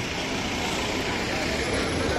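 Busy street ambience: a steady mix of traffic and the distant voices of a passing crowd.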